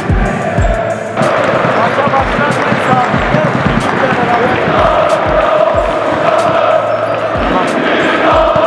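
Crowd of football supporters chanting in unison over a steady, low thumping beat. The crowd swells about a second in.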